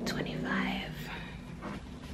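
A young woman whispering softly under her breath, with no clear words.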